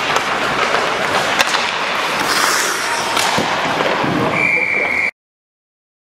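Ice hockey practice: skate blades scraping the ice and sticks and pucks clacking, with sharp knocks against the boards, echoing in a large rink hall. A steady high tone sounds briefly about four seconds in, and the sound cuts off suddenly about five seconds in.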